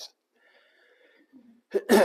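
A man clears his throat once, sharply, near the end, after a second or so of faint breathing.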